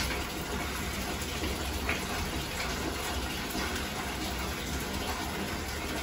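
Water running from the tap into a bathtub, filling it: a steady rush of water that keeps an even level throughout.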